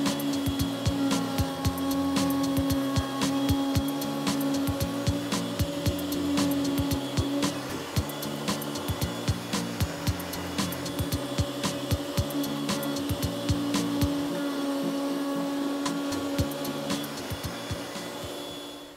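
Background music with a steady beat and a stepping bass line, over the steady whine of a router running in a router table.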